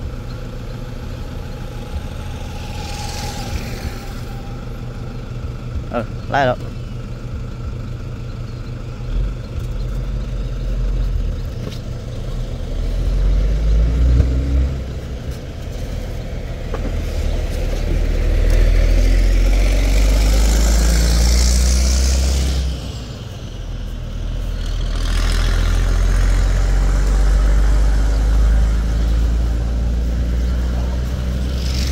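Road traffic passing close by: heavy vehicles such as buses go by with a low engine rumble and tyre hiss that swell and fade. The loudest pass comes just past the middle, and another builds up near the end.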